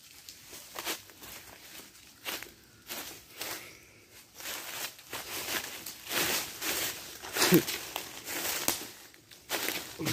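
Footsteps on dry fallen leaves and rocky ground: an irregular series of steps.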